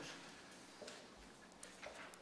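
Near silence with a few faint ticks and rustles of sheets of paper being handled, about a second in and again near the end.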